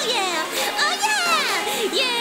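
High female voice singing with sharp swooping rises and falls in pitch, including long falling glides about a second in, over an upbeat pop backing track.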